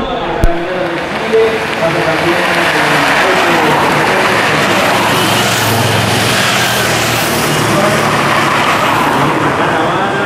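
A road-race peloton and its escort vehicles approaching along a city street: a steady, loud rush of engine and road noise, with voices in the background.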